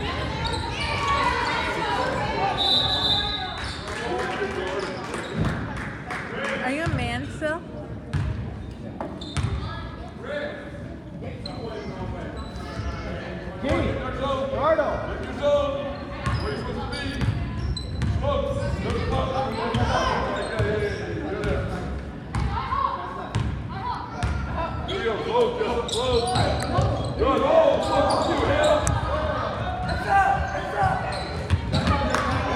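A basketball bouncing on a hardwood gym floor during play, repeated sharp bounces among shoes on the court, with indistinct voices of players and spectators echoing in a large gym.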